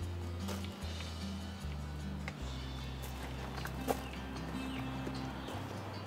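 Background music: sustained low notes that step to a new pitch every second or so, with a few faint clicks over them.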